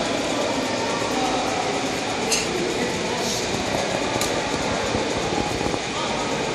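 Steady background noise of a large sports hall with faint, indistinct voices, and three short sharp clicks a second or so apart around the middle.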